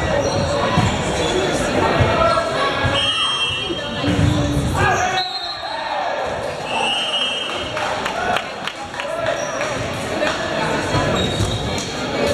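Indoor volleyball rally in a gymnasium: the ball being struck and bouncing, with players' and spectators' voices echoing around the hall. Two short high-pitched squeals, about three and about seven seconds in.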